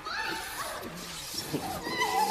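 Inhuman, wavering cries of a film zombie in a struggle, several of them gliding up and down in pitch.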